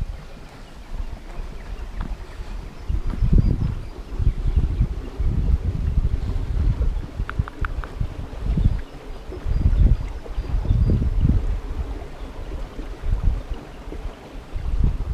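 Wind buffeting the camera microphone in irregular low gusts, over the faint running of a small rocky stream. A few brief high ticks come about seven seconds in.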